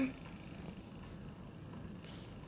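Faint, steady low rumble of background noise with no distinct events.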